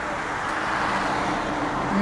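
Steady car cabin noise: engine hum and road and traffic noise heard from inside a car in city traffic.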